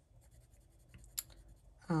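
Faint, soft scratching of a Derwent Inktense pencil moving over the paper of a colouring page, with one sharp tick about a second in.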